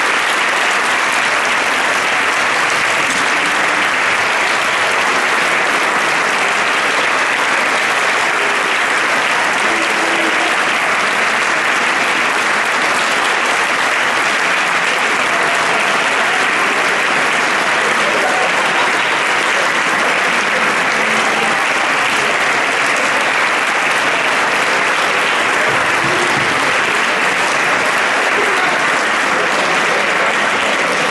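Audience applause: steady, unbroken clapping from a full hall.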